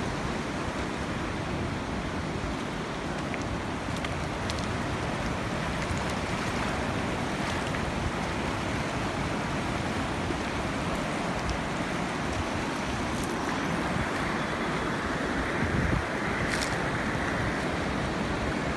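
Fast-flowing mountain river rushing over rocks, a steady noise of water. A few faint clicks, footsteps on the river pebbles, come through it.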